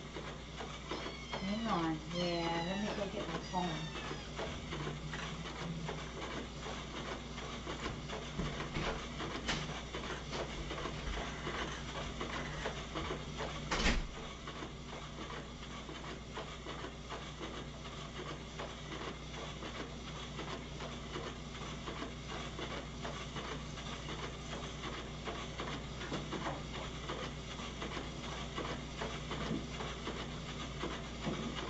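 A few cat meows in the first few seconds, from cats waiting to be fed, over a steady low hum. A single sharp knock about fourteen seconds in.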